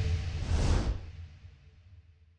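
Whoosh sound effect with a deep bass swell from an animated logo sting, fading out over about a second and a half at the close of a short electronic jingle.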